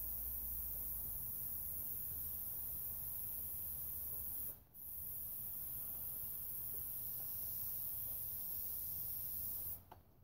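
Airbrush spraying paint, a steady hiss of air and paint from the nozzle. It breaks off briefly about halfway through, then cuts off just before the end.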